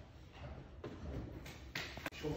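Quiet room sound with faint shuffling and a few soft taps, and one sharper knock near the end.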